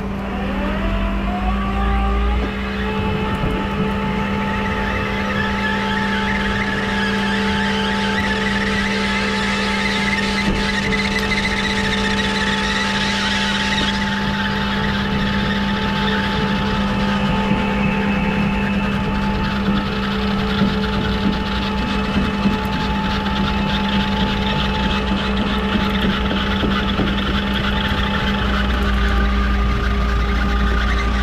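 Rollback tow truck's engine and hydraulic winch running as the winch cable pulls a damaged car up the flatbed. A steady mechanical whine rises in pitch over the first couple of seconds as the engine speeds up, then holds level.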